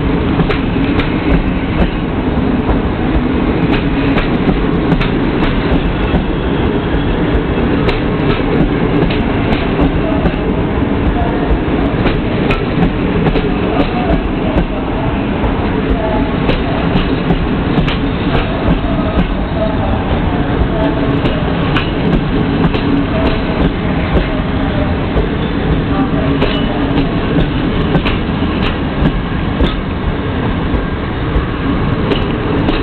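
Passenger coaches of a train pulling out of a station roll past at low speed. There is a steady rumble, and the wheels click irregularly over the rail joints.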